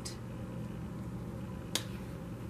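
A single sharp click of a tarot card being handled as it is lifted from the spread, near the end, over a steady low background hum.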